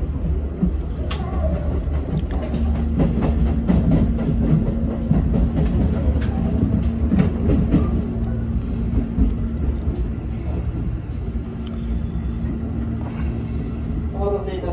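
Tobu 10000 series electric train running, heard from the driver's cab: a steady low rumble of wheels on rail with sharp clicks and clunks as it passes over the points. A steady low tone joins in after about two seconds.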